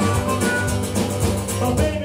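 Live band playing an instrumental passage: harmonica over acoustic guitar, electric bass and a drum kit.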